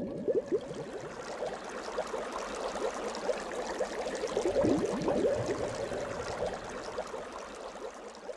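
Water bubbling and gurgling, a dense run of small bubbling sounds over a wash of noise, swelling about halfway through and fading near the end.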